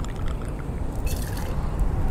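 White rum pouring through a bottle's pour spout into a steel jigger and the metal shaker tin, a soft liquid splash about a second in, over a steady low background rumble.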